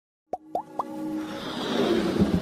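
Logo-intro sound effects: three quick rising plops, each a little higher than the last, about a quarter second apart, then a swelling whoosh that builds toward the end.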